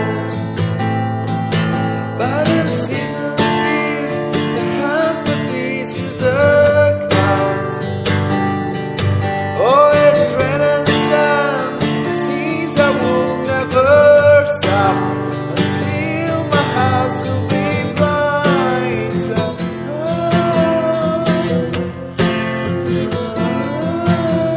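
A song with acoustic guitar and a sung vocal line, playing continuously.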